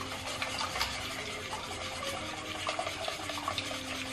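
Hand wire whisk beating eggs in a stainless steel mixing bowl: a fast, continuous run of scraping and clicking strokes against the metal.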